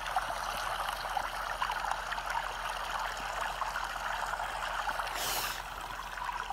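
A white-noise recording of running water, a steady stream-like rush, playing in the background, with a short high hiss near the end.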